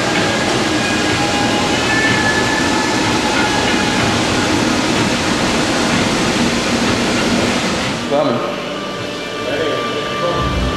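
Loud, steady mechanical din with a rattling, rumbling character, easing off about eight seconds in, where faint voices show through.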